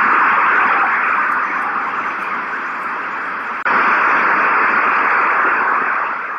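Loud steady hiss of static from an old speech recording, carrying on with no voice over it. It sinks slightly for a couple of seconds, then jumps back up suddenly a little over halfway through.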